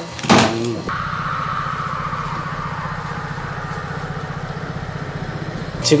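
A brief sudden knock or clatter, then a motor-driven machine running steadily with a fast, even low pulsing under a higher hum. This is café equipment, not identified.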